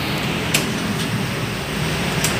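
Steady mechanical hum of a tyre-shop tyre changer and workshop machinery, with one sharp click about half a second in, while a low-profile tyre is levered onto an alloy wheel.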